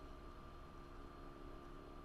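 Near silence: faint steady room tone, a low hiss with a thin constant hum.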